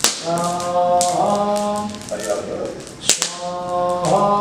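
A man chanting Sanskrit mantras for a havan fire offering, the notes held long on a steady pitch. Two sharp taps sound, one at the very start and one about three seconds in.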